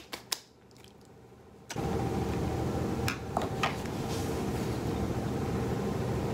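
Two short sharp clicks, then about two seconds in a steady room noise with a low hum starts abruptly and carries on, with a few faint taps over it.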